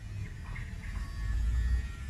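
A low, steady rumble that swells slightly in the second half, with faint scattered higher sounds over it.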